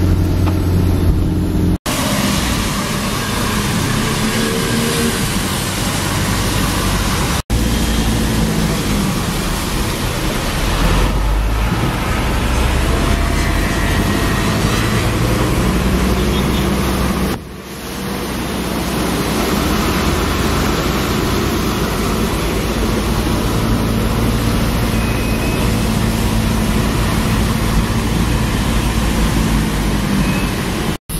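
Steady road noise from a car driving on wet city streets: engine drone and tyre hiss with passing traffic. The sound is broken by three brief, sudden dropouts.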